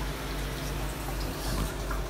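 Steady rush of running water over a constant low hum.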